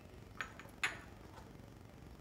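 Two short, light clinks, the second louder, as a hand mixing cauliflower in batter knocks against the steel mixing bowl.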